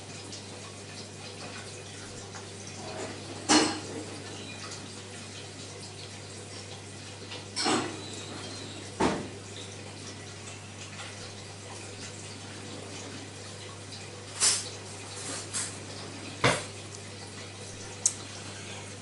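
A man sipping and tasting beer: about half a dozen short wet mouth sounds of sips, swallows and lip smacks, and the glass set down on the table, over a steady low hum.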